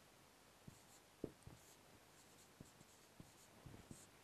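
Marker pen writing on a whiteboard, faint: soft scratchy strokes with a few light taps of the tip, the sharpest about a second in.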